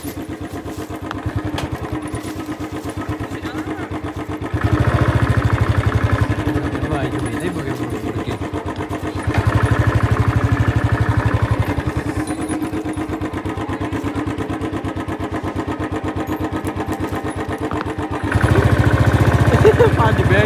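A small engine running steadily with a fast, even beat, growing louder three times as it is revved: about four seconds in, about nine seconds in and near the end.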